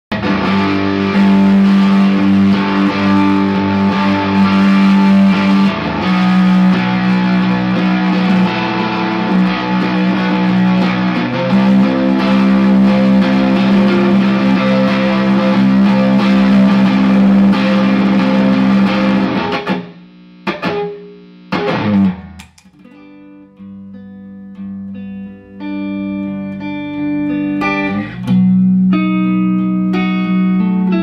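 Electric guitar played through an amplifier: loud, full strummed chords for about the first twenty seconds, then it drops suddenly to quieter, single picked chord notes ringing out one after another.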